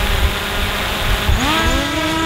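Small quadcopter drone flying close by: a steady propeller whirr with wind buffeting, and about one and a half seconds in a motor whine that rises in pitch and then holds.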